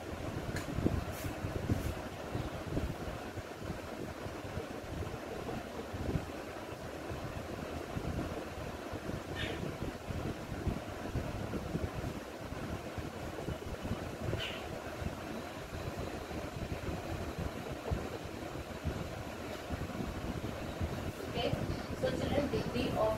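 Steady rushing background noise with a low rumble, with a felt-tip marker writing on a whiteboard and two faint short squeaks about nine and fourteen seconds in.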